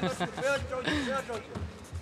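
Mostly speech: softer commentator voices with a laugh near the end.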